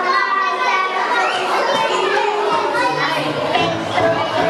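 Many young children's voices at once, high and overlapping, echoing in a large hall. A steady low tone joins about two and a half seconds in.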